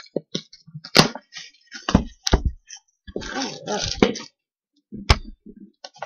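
Loose contents sliding and knocking inside a cardboard gift box as it is tilted and shaken: a few sharp knocks, with about a second of rustling near the middle.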